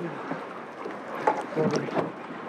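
A man's excited voice breaking out briefly, a little over a second in, over a steady hiss of wind and water.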